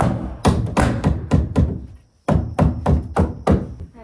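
A quick, uneven run of knocks, about three a second, with a short break about two seconds in.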